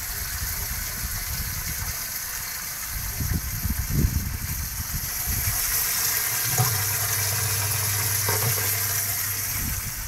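Water gushing and splashing in a water-filled plastic barrel sunk in the ground, a steady hiss. A low steady hum comes in about two-thirds of the way through and stops just before the end.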